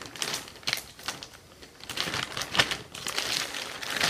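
Clear plastic garment bag crinkling and crackling in irregular bursts as a folded polo shirt is pulled out of it and handled.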